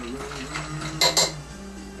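A spoon clinking against a drinking glass twice in quick succession, about a second in, as a fizzy drink is stirred. Background music plays underneath.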